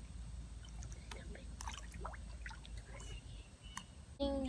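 Faint outdoor ambience: a steady low rumble with faint, distant voices and a few small clicks.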